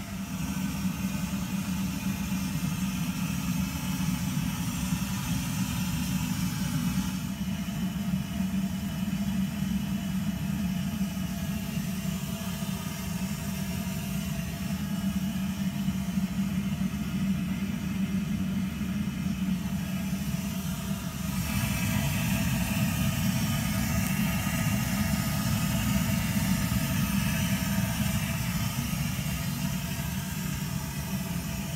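Electric mash pump on a home-brewing rig running with a steady hum. The hiss above the hum drops away about seven seconds in and comes back louder about twenty-one seconds in.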